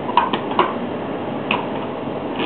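A few short, sharp clicks: three in quick succession in the first half-second and one more about a second and a half in, over a steady background hiss.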